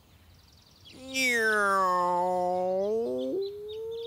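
A long drawn-out vocal sound from one voice, starting about a second in: its pitch dips slowly and rises again over about two seconds, then steps up to a short higher held note near the end.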